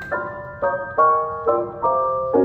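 Jazz chords played on an electric stage keyboard with a piano sound: a quick string of about five separately struck chords in two seconds, part of an etude built on open triads in the left hand.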